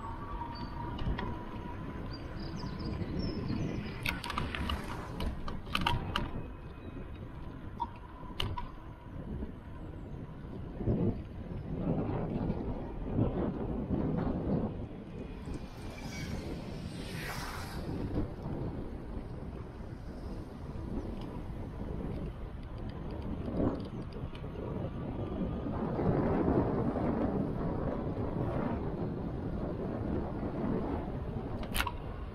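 Wind buffeting the microphone of a camera riding along a street, with road rumble, a continuous low rumble. A few sharp clicks or rattles come about four to six seconds in, and a hissing swell about halfway through as a red double-decker bus passes close alongside.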